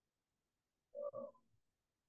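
Near silence broken by a single short, hesitant "um" from a speaker, about a second in.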